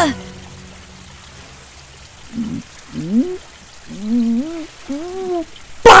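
A cartoon character's wordless vocal sounds: about four short groans that rise and waver in pitch, after two seconds of faint steady background.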